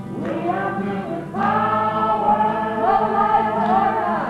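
A small choir of men and women singing a song in harmony, holding long notes. A new phrase begins just after the start and grows louder about a second and a half in.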